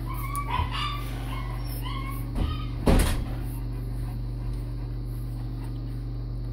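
Two-week-old Saint Bernard puppies squeaking and whimpering while nursing, several short high squeaks in the first two seconds. A single loud thump comes about three seconds in, over a steady low hum.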